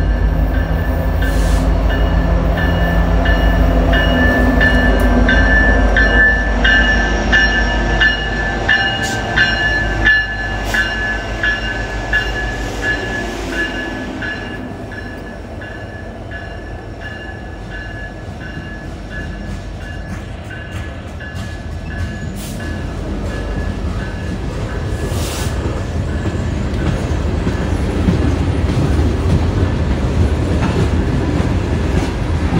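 CN freight train led by EMD SD70M-2 diesel locomotives approaching and passing close by, engines running, with a bell-like ringing struck about twice a second through much of the first two-thirds. Tank cars then roll past, their wheel and rail noise growing louder near the end.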